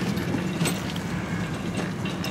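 A steady low hum with a few short, sharp clicks and rattles of a bunch of car keys being handled while a key fob that does not set off the car's alarm is pressed.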